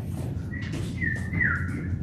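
People imitating birds with whistled chirps: a few short whistled notes, some sliding down in pitch.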